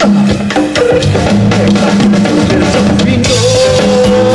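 Live funk band playing, with a drum-kit and bass-guitar groove to the fore. About three-quarters of the way through, a long held note comes in over it.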